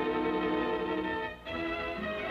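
Orchestral cartoon background music led by violins, holding one sustained chord, then a brief dip and a new held chord about a second and a half in.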